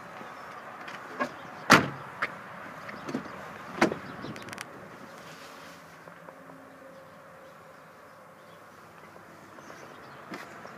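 Several sharp knocks and clicks in the first five seconds, the loudest a little under two seconds in, from handling around a pickup truck's cab and doors. A low steady background follows.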